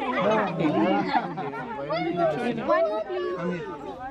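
Several people talking over one another: continuous overlapping chatter with no single clear voice.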